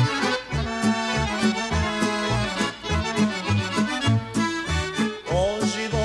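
Instrumental break of a 1970s Yugoslav folk song: accordion playing the melody over a steady, pulsing bass and rhythm accompaniment. Near the end a wavering melody line with vibrato enters.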